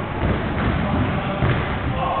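A football being kicked and bouncing, and players' feet running on a wooden sports-hall floor: a run of dull thuds, with a heavier one about a second and a half in.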